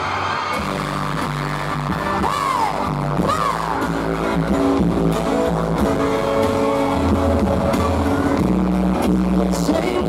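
Live band playing a pop song loud through a PA: a drum kit and bass guitar carry a steady beat, with a singer's voice over it at times.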